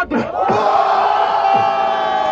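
Crowd of battle spectators shouting together in one long held cry, starting about half a second in: their reaction to a freestyle rap punchline.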